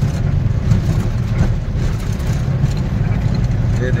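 Truck's diesel engine running steadily under way at low speed, heard from inside the cab as a continuous low rumble, with a few faint knocks from the rough road.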